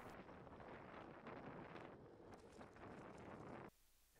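Near silence: a faint steady hiss that cuts off abruptly near the end.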